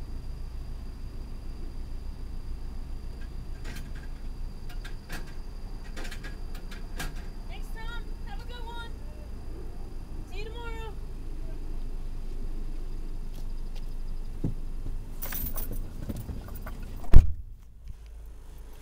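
Car cabin with a steady low engine rumble while stopped, a few scattered clicks and a rustle, two brief faint voice-like sounds in the middle, and one loud knock near the end as the phone is handled.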